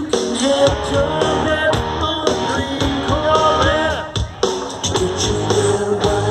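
Rock band playing live through a large outdoor PA, with a melodic electric guitar line, heard from among the crowd.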